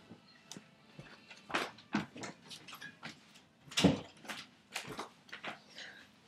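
Scattered knocks and rustles of a person getting up and moving about, with a louder thump about four seconds in as a room door is shut.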